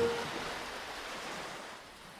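An advertising jingle ends on one last note with a low thump, then an even rushing wash of water sound, like surf or a splash, fades steadily away.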